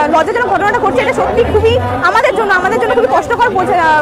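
Speech only: a woman talking continuously, with chatter from a crowd behind her.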